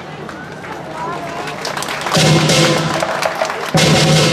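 Southern Chinese lion dance percussion band of drum, cymbals and gong accompanying a lion routine, with two loud ringing crashes, one about two seconds in and one near the end. Crowd voices sound between the crashes.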